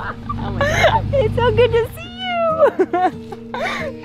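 Excited, high-pitched voices of women calling out to each other in greeting, without clear words. A low steady hum runs underneath for the first couple of seconds.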